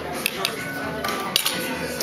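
Dishes and cutlery clinking: two pairs of sharp clinks, one shortly after the start and another a little past the middle.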